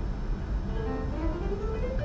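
Sampled acoustic grand piano (HALion 6's Warm Grand) playing back a short MIDI line, its notes stepping upward in pitch.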